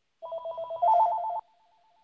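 A telephone ringing with a rapid warble between two tones for about a second, then carrying on much fainter.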